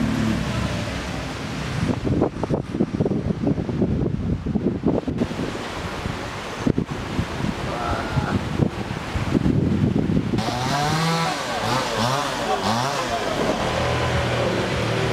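Gusty wind buffeting the microphone with rustling, then from about ten seconds in, a dog barking repeatedly.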